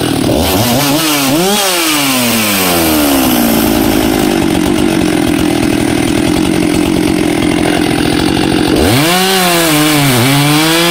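Husqvarna 395XP 94cc two-stroke chainsaw revved up and down twice, then held steady at full throttle, with the engine note dropping suddenly near the end as the chain bites into a pine log and comes under load.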